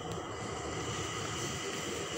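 Steady background hum and hiss with faint high tones running through it, no speech.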